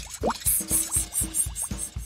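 Bouncy children's cartoon music with a steady beat, with a quick rising water-plop sound effect about a quarter of a second in.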